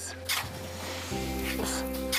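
A metal spade scraping and cutting into dry sand, twice, with soft background music holding steady notes underneath.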